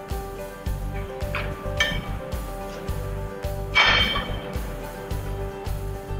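Background music with a steady beat, over the metallic clinks of the steel outrigger of a Ballymore BMVL-30 mast lift being pulled up and swung out into place: two light clinks a little over a second in, then a louder ringing clank about four seconds in.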